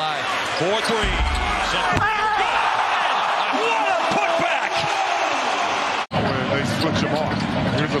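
Basketball game sound from an arena floor: sneakers squeaking on the hardwood court and the ball bouncing over steady crowd noise. The sound cuts out for an instant about six seconds in.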